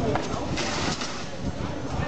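Shouting and chatter from a crowd of spectators, with a brief burst of noise about half a second in.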